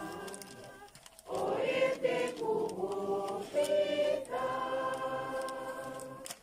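A choir of men and women singing a hymn together in long held phrases. One phrase fades out, and a new one begins after a short breath about a second in.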